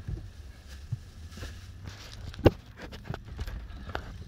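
Scattered clicks and knocks of a phone being handled inside a car, one sharp knock about halfway through, over a steady low rumble.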